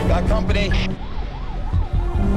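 An emergency vehicle siren in a fast yelp, its pitch rising and falling several times a second, starting about halfway through, over film music.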